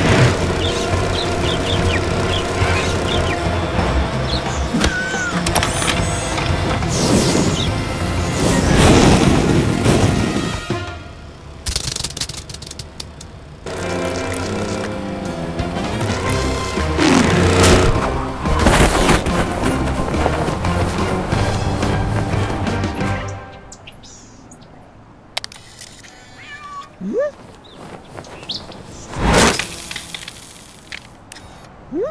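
Background music with a steady beat, with a few cat meows over it. The music stops about three-quarters of the way through, leaving a quieter stretch with a few sudden noises and one loud burst near the end.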